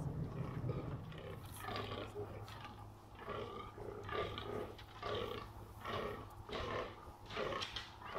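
Fallow deer buck groaning in the rut: a run of short, deep belching grunts, about two a second, starting a second or so in.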